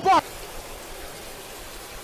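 Steady hiss of water spraying from a nozzle into a plastic bucket.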